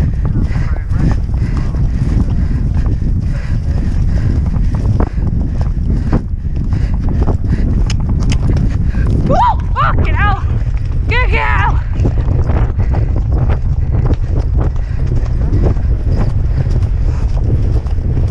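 Wind buffeting a helmet-mounted camera's microphone at the gallop, over the quick beat of the horse's hooves on turf. About ten seconds in a voice calls out briefly, twice.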